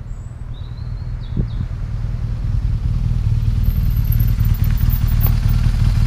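2011 BMW R1200GS air/oil-cooled boxer-twin engine, a steady low rumble that grows louder as the motorcycle rides up close.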